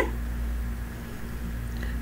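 A steady low background hum, with no other clear sound.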